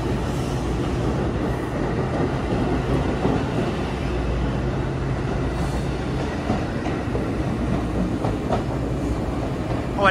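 NJ Transit multilevel passenger train with an electric locomotive rolling past at close range: a steady low rumble of wheels on the rails.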